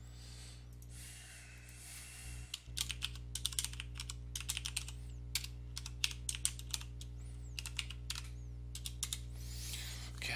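Typing on a computer keyboard: a quick, uneven run of keystrokes that starts about three seconds in and carries on almost to the end, over a steady low electrical hum.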